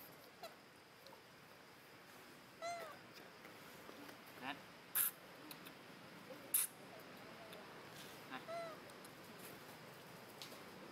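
Two short animal calls, each rising and falling in pitch, about three seconds in and again near the end, with a few sharp clicks in between over faint outdoor background.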